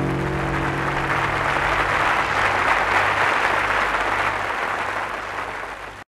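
Audience applauding as the last sustained harmonium notes die away. The applause swells, then fades and cuts off suddenly at the end.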